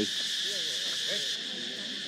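Dense chorus of crickets: a steady, high-pitched shrill drone, with faint voices underneath.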